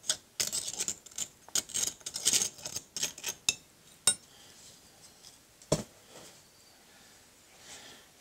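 Metal hand tools scraping and chipping at the sand and investment crusted on the crown of a freshly cast bronze bell: a quick, irregular run of scratchy scrapes and clicks for about three and a half seconds. Then a single sharp click, and near the end a louder knock.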